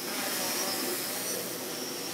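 Quadcopter's brushless motors and propellers whirring steadily in flight, with a faint high whine, the motors driven by speed controllers flashed with SimonK firmware.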